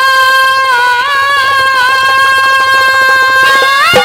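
Live Haryanvi ragni: a woman's voice holds one long note, gliding up just before it ends, over a fast, even drum beat.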